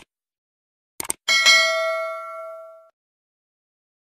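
Subscribe-button sound effect: two quick mouse clicks about a second in, followed by a single bright bell ding that rings out and fades over about a second and a half.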